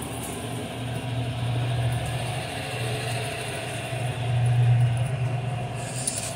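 Hydro-jetter (high-pressure water jetting machine) running: a steady low machine hum that swells louder about four seconds in.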